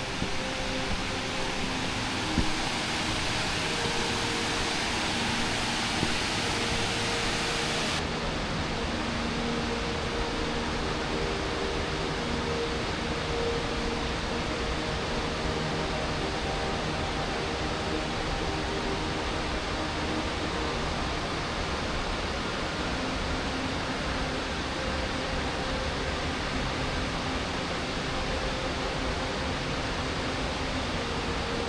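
Steady rushing roar of a mountain waterfall and its cascades. About eight seconds in, the sound turns duller as the high hiss drops away.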